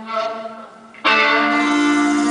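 Live folk-rock band playing a fiddle tune: a held fiddle note fades away, then about a second in the band comes back in loudly and keeps playing.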